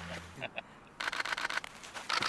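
A rapid run of sharp clicks, about ten a second, lasting about a second in the second half.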